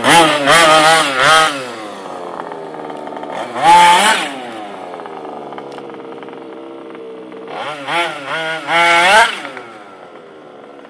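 The small two-stroke petrol engine of a large-scale RC buggy, on its first run after winter storage, revving in short throttle bursts: several quick blips at the start, one about four seconds in and a few more near the end, dropping back to a steady lower running note between.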